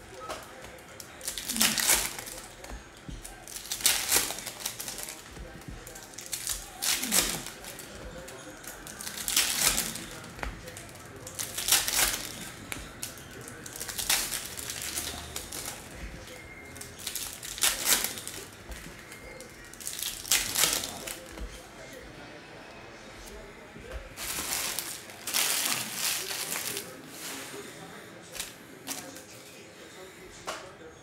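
Foil trading-card pack wrappers crinkling as they are opened, and baseball cards rustling and sliding against each other as they are flipped through. The rustles come in short, sharp bursts every two to three seconds.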